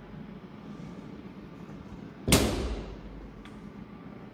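The hinged sheet-metal enclosure door of a benchtop CNC router cabinet being shut: one loud thud a little over two seconds in, dying away within half a second.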